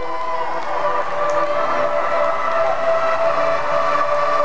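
Sustained synthesizer chords over the PA system, several notes held steadily with no drum beat, as the song's intro begins.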